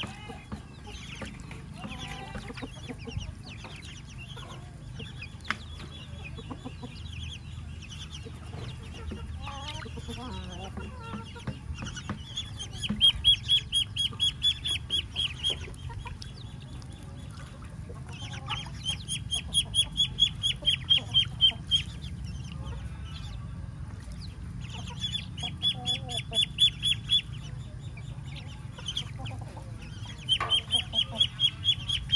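Muscovy ducklings peeping. Three runs of quick, high, short notes each last a few seconds, with fainter scattered peeps between them over a low steady background hum.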